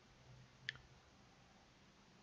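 Near-silent room tone with a single short click about two-thirds of a second in.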